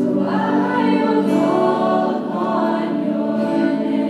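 A worship song with a group of voices singing long held notes over sustained instrumental chords; the voices come in about a quarter of a second in.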